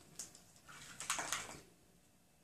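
Soft handling noises of a plastic spoon and a hot glue gun being picked up: a few light clicks and rustles in the first second and a half, then it goes quiet.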